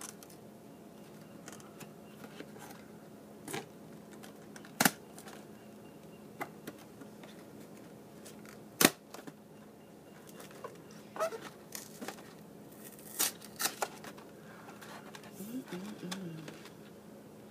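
Cardboard chocolate box being opened by hand: scattered sharp clicks and taps of the flap and lid, with soft handling rustle between them and a cluster of clicks near the end as the lid comes up.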